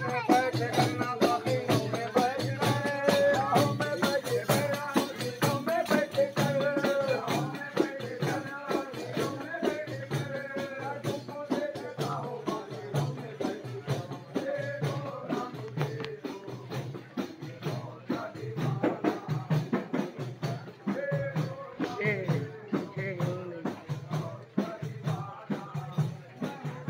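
Procession music: men singing together to a steady beat of hand drums with jingling, rattling percussion. The singing is strongest in the first half and fades back behind the drums later.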